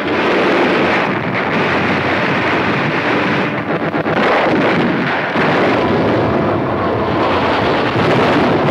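Continuous din of battle sound effects on an old film soundtrack: explosions and gunfire running together into loud, dense noise without a break.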